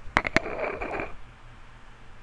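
Close handling noise at the microphone as the hairbrush session begins: two sharp clicks, then a scratchy rustle lasting about a second, which gives way to a faint low hum.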